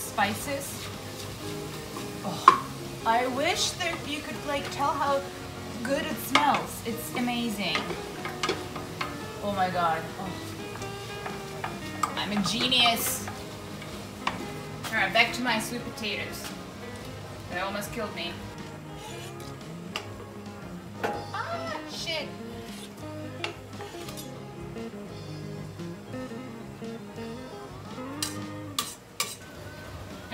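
A wooden spoon stirring vegetables sizzling in oil in a stainless steel stock pot, with scattered knocks of spoon and utensils against the pot, over background music.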